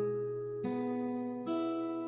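Steel-string acoustic guitar fingerpicked through an open E chord shape, one note at a time. A new note sounds about two-thirds of a second in and another about a second and a half in, each ringing over the notes before.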